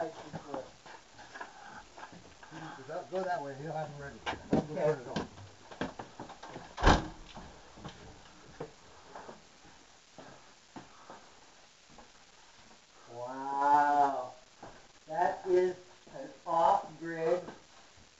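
Indistinct talking with scattered small clicks, a single sharp knock about seven seconds in, and one long, drawn-out voiced exclamation about thirteen seconds in, followed by more talk.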